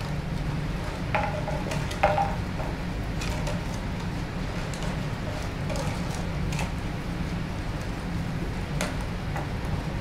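Puppies tussling over a sheet and a plastic water bottle on a tile floor: scattered clicks, crinkles and taps, with a couple of short squeaky sounds in the first two seconds and a sharp click about two seconds in. A steady low hum runs underneath.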